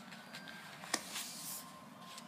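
Faint rustling of a paper coffee filter being handled and folded, with one sharp click about a second in.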